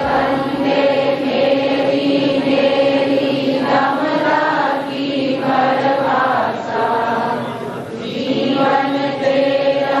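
A large gathering of voices chanting or singing a devotional hymn together, in long held notes that move in phrases a few seconds long.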